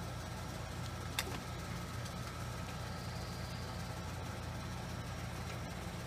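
A steady low mechanical hum, with one sharp click about a second in.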